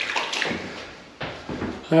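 A long-handled plastering brush sloshed in a bucket of water, then worked along the fresh plaster at the ceiling line from about a second in.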